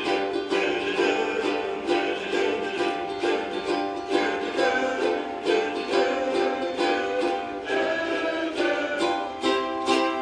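A large ukulele ensemble strumming chords together in a steady, even rhythm, with a chord change near the end.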